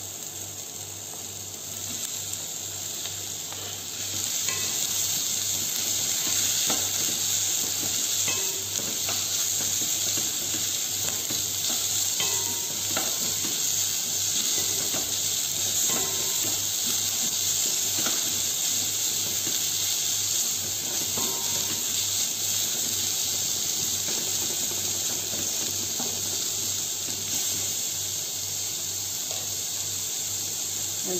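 Sliced carrots and green chili sizzling as they sauté in olive oil in a pot on a gas burner, with a wooden spatula stirring and tapping against the pot now and then. The sizzle grows louder about four seconds in.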